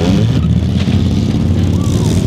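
Many compact-car engines running hard together in a demolition derby, a dense steady low rumble, with a sharp crash about half a second in from cars slamming into each other.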